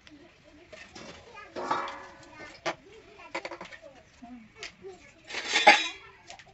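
Children's voices and chatter, with a loud cry near the end. A few sharp taps come in between, as chopped garlic is scraped off a plate into a steel bowl of raw chicken.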